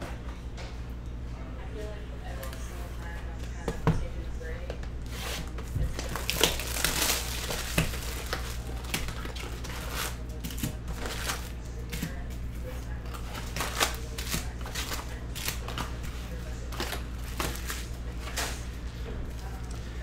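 Foil-wrapped Bowman University Chrome card packs crinkling and rustling as hands take them out of the cardboard hobby box and stack them, with scattered sharp crackles that are busiest from about six to eight seconds in.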